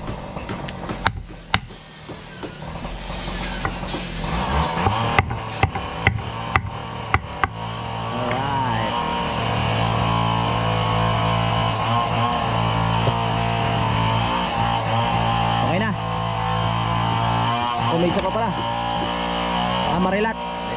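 A power cutting tool running with a steady drone, starting about four seconds in and getting louder from about halfway. Earlier there is a series of sharp knocks from a knife chopping on a wooden board.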